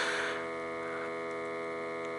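A steady electrical hum, a drone of many pitches held unchanged, with a soft hiss fading out in the first half second.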